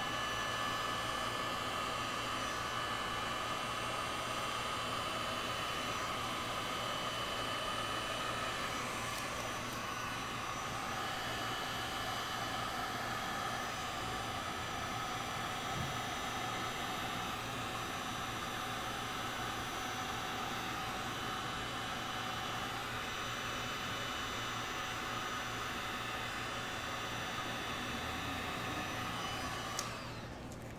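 Handheld heat gun running steadily, a rushing fan noise with a steady whine, as it blows wet epoxy resin into waves and lacing. It switches off at the very end.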